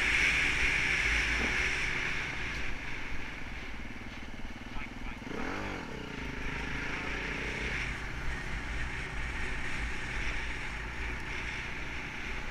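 Enduro motorcycle engine running while riding, mixed with steady wind rush on the microphone. About five and a half seconds in, the engine pitch rises and falls once in a brief rev.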